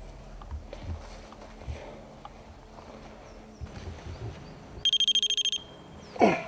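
Electronic paranormal detector giving a rapid burst of high-pitched beeps, under a second long, near the end, after faint handling knocks as the devices are set out.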